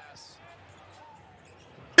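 Faint TV broadcast audio of an NBA game: arena crowd noise with quiet commentary and a basketball bouncing on the hardwood court.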